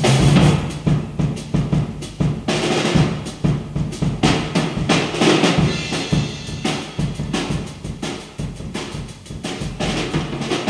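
Drum kit playing a busy, drum-led passage of a late-1960s rock recording: rapid snare and bass drum hits with rolls, growing quieter toward the end.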